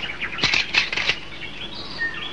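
Birds chirping: a quick run of short chirps about half a second in, then a higher twittering call.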